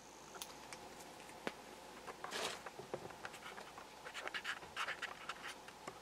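Faint handling noises: scattered small clicks and a brief rustle as a night vision unit is handled and taken away from the camera.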